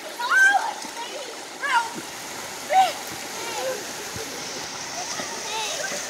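Shallow river water running steadily over rocks, with splashing from swimmers moving through it. Short high shouts of children's voices come and go over it.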